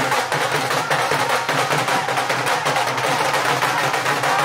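Punjabi dhol drum played live in a fast, steady bhangra rhythm of sharp stick strokes.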